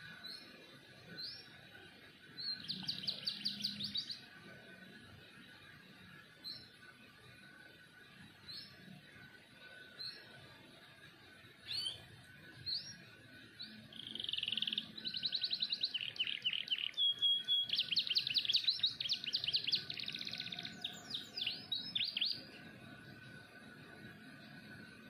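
Yellow domestic canary singing in full voice: a few short chirps, a brief rapid trill about three seconds in, then a long, loud song of fast trills and rolls lasting about eight seconds.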